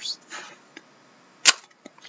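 Trading cards being handled by hand: short swishes of card sliding against card or plastic, a few light ticks, and a single sharp snap about one and a half seconds in.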